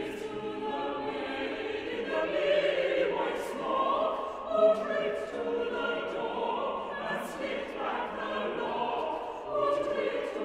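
Mixed church choir singing a choral piece in harmony, several sustained voice parts moving together, with a sharp sibilant consonant cutting through about three and a half seconds in and again about seven seconds in.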